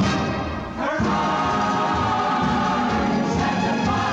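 Film-musical soundtrack with a chorus singing over the orchestra. About a second in, after a brief dip, the voices settle into a long held chord.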